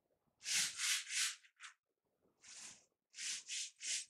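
Flat hands rubbing over the sprayed-damp back of sheets of watercolour paper, spreading the water evenly: short swishing strokes, three about half a second in, one near the middle and three near the end.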